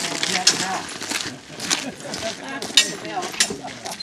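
Bystanders talking indistinctly in the background, with light metallic clinks every half second or so.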